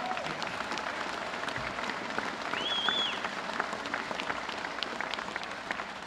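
Audience applauding, a steady patter of many hand claps. About halfway through, one short high-pitched call rises out of it.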